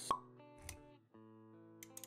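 Intro music with held notes, punctuated by a sharp pop sound effect right at the start and a softer low thud a little later, with a few light clicks near the end.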